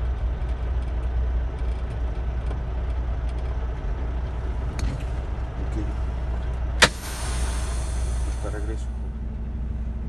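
Semi-truck engine idling steadily, heard from inside the cab. About seven seconds in there is one sharp click, the loudest sound, followed by a hiss that lasts about two seconds.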